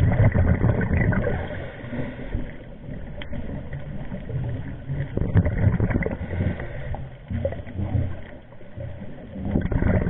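Scuba diver's regulator breathing heard underwater: low rumbling, gurgling bursts of exhaled bubbles that swell every few seconds and die down between breaths.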